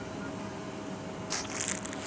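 Dry gaillardia stems and leaves crackling and snapping as the plant is cut back, a short burst of crunching snips about one and a half seconds in, over a steady background hum.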